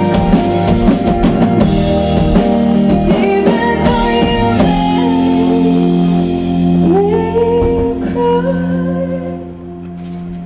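Live band playing a song: strummed acoustic guitar, electric bass and drum kit, with a woman singing. The drums hit steadily for about the first half, then a held chord rings under the voice and dies down near the end.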